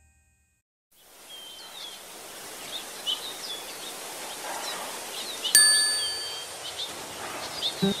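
After about a second of silence, small birds chirp over a steady outdoor hiss. A little past halfway a single bright bell-like ding rings out and fades over about a second.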